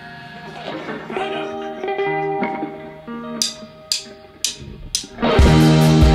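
Electric guitar and bass notes ringing out. Then four sharp clicks about half a second apart count the song in, and the full rock band comes in loud a little after five seconds.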